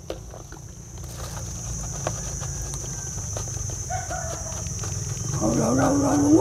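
A steady high insect buzz from crickets over a low rumble, with faint crinkling ticks of a plastic pouch as its contents are tipped out. A low voice starts up near the end.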